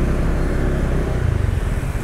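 Motorbike engine running steadily at low speed while riding, with road and wind noise.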